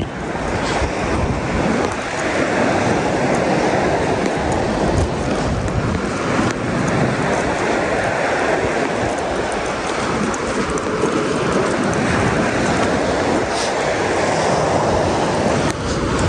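Sea surf washing onto the beach, a steady rushing noise that swells and eases slightly.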